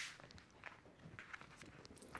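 Faint footsteps: a few soft steps with light handling noises, a short rustle at the start.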